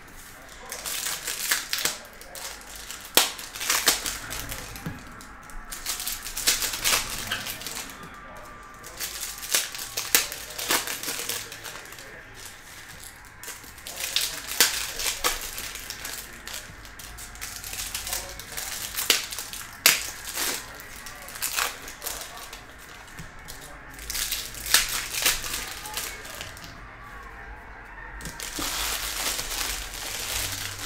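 Foil wrappers of Topps Chrome baseball card packs being torn open and crinkled, with card stacks handled, making irregular sharp crackles and clicks throughout.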